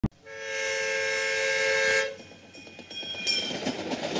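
Diesel locomotive air horn sounding one held chord for about two seconds, then cutting off, followed by quieter train rolling and clattering on the rails.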